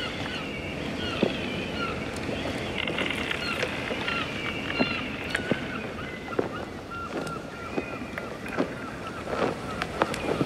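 Ship and harbour sound effects: a steady wash of water and wind, with scattered knocks and creaks from the ship and birds calling again and again in short high cries.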